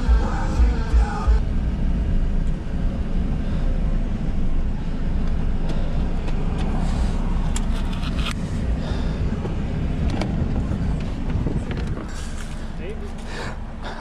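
Chrysler PT Cruiser's cabin while driving: a steady low rumble of engine and road noise. Background music plays for the first second or so. The rumble gets quieter near the end.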